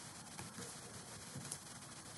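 Faint steady room hiss with a couple of faint computer mouse clicks.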